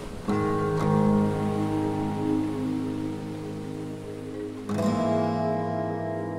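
Music: a slow instrumental passage of ringing guitar chords, struck about a third of a second in and again near five seconds, each left to sustain while a melody line moves beneath.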